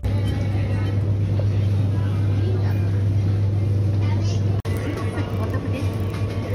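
Supermarket ambience: a loud, steady low hum with faint voices in the background. It drops out for an instant about four and a half seconds in.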